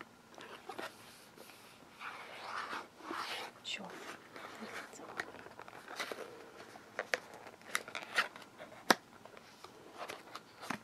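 Fingers handling and opening a small cardboard carton of chest rub: scratchy rustling of the carton, then a run of sharp cardboard clicks and taps as the end flap is worked open, the loudest just before the end.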